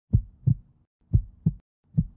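Heartbeat sound effect: paired low thumps, lub-dub, repeating about once a second.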